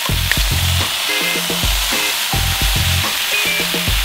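Steak searing in a hot oiled cast iron skillet with its soy-sauce marinade and lemongrass, a steady sizzle. Background music with a repeating bass line plays over it.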